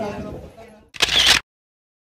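Faint voices and background sound fading out, then about a second in a short, sharp click-like burst lasting under half a second, after which the sound cuts to dead silence.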